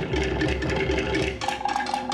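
Tahitian drum music accompanying a dance: rapid strikes on wooden slit-log drums over a deep drum beat, which drops out about one and a half seconds in.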